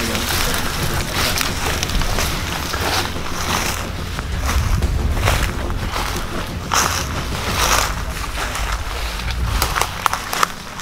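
Walking through high weeds and thorny brush: stems and brush swishing against clothing and gear in irregular rustles, over a low rumble of the body-worn camera rubbing against the pack straps.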